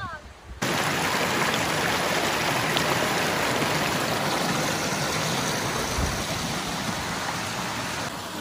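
Mountain stream rushing over rocks in small cascades: a steady rush of running water that starts abruptly about half a second in and holds level.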